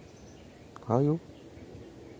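A man's voice saying one short word, 'ayo', about a second in; otherwise faint outdoor background with a thin, steady high-pitched tone.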